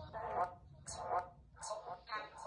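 Choppy, voice-like fragments from a Necrophonic ghost-box app: three short bursts of garbled voice, about one every half second.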